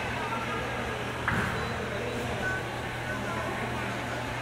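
Indoor basketball gym ambience: a steady low hum under distant voices, with a knock about a second in and a couple of short high sneaker squeaks on the hardwood court.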